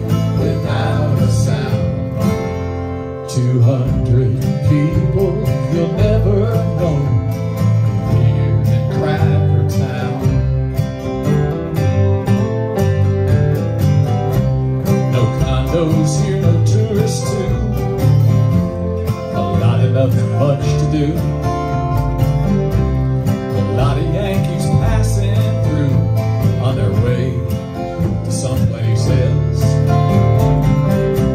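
Live country band playing an instrumental passage: acoustic and electric guitars strumming over upright bass and a hand drum.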